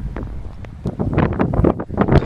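Strong wind buffeting the microphone: an uneven low rumble with gusts, growing louder about a second in.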